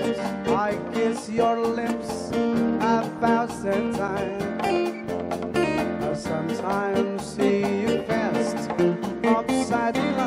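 Live band playing a bachata instrumental: a guitar melody with bent notes over bass and a steady percussion beat.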